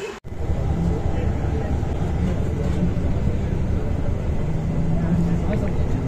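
Steady low rumble of a moving bus heard from inside its passenger cabin, starting abruptly a moment in.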